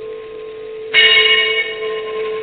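A bell struck once about a second in, its bright overtones ringing and slowly fading over a steady held tone.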